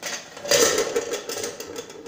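A plastic ladle dipping into and stirring a pressure cooker of freshly cooked carioca beans and broth: a wet, sloshing noise with many small clicks, starting about half a second in.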